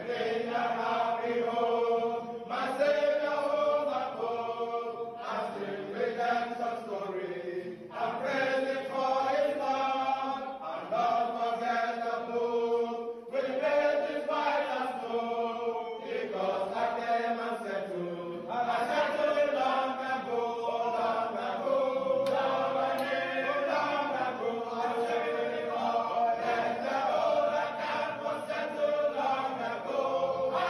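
A group of young men singing a hymn together, phrase after phrase, with brief pauses for breath between lines.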